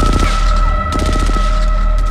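Battle sound from a war film: short bursts of rapid machine-gun fire over a steady low rumble, with a high held tone running underneath.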